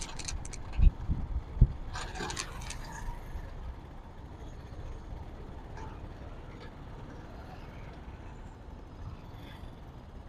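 Motorcycle running at low speed in traffic, heard from the rider's seat as a low steady rumble mixed with road noise, with a couple of dull thumps in the first two seconds; it settles quieter from about four seconds in.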